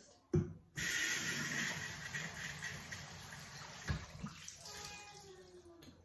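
Glass rinser spraying jets of water up into an upside-down baby bottle pressed onto it. After a knock, a sudden hissing spray starts about a second in, is strongest for a couple of seconds, then tapers off with a second knock near the four-second mark.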